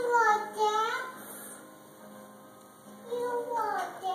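A young child singing a wordless, sing-song tune in short gliding phrases, with a pause in the middle.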